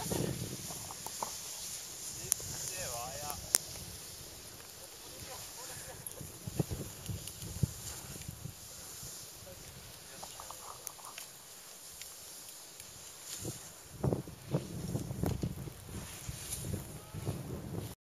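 Faint voices of people calling and talking off and on over a steady hiss, getting louder and more frequent in the last few seconds.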